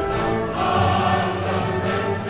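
A choir singing with orchestra in a classical choral work, full and sustained.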